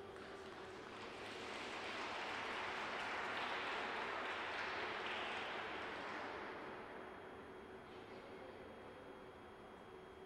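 Faint applause from a small crowd, swelling about a second in and dying away after about six seconds, with a faint steady hum underneath.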